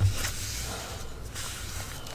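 A dry wipe rubbing over a glued paper envelope: soft rustling that fades over the first second, after a low bump at the start.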